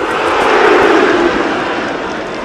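Whoosh sound effect of a replay transition wipe: a swell of rushing noise that rises to a peak under a second in and fades away.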